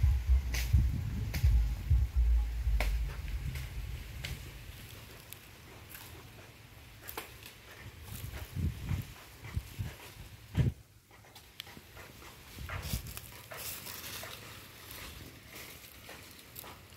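Outdoor ambience with a heavy low rumble on the microphone for the first few seconds. It then turns quiet, with scattered faint clicks and a few soft thumps.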